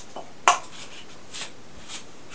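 Plastic cupping cups being handled and set on the back: one sharp click about half a second in, then several lighter clicks and taps.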